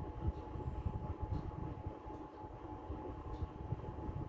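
Marker pen writing on a whiteboard in a few faint short strokes, over a low uneven rumble of room noise with a thin steady hum.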